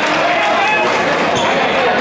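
Gym crowd chatter, many voices at once, with a single basketball bounced on the hardwood court about a second and a half in, a free-throw shooter's dribble.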